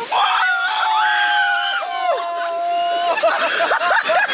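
A wave of water splashing over the boat, at once followed by several riders screaming in long, held shrieks for about three seconds; near the end the screams give way to laughter and hand clapping.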